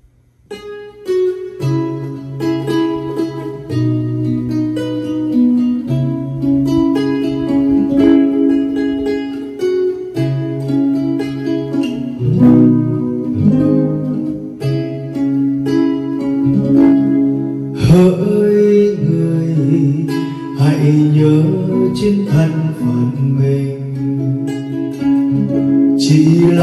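Classical guitar played solo as a song's introduction: single picked notes over a moving bass line, the playing growing fuller about two-thirds of the way through.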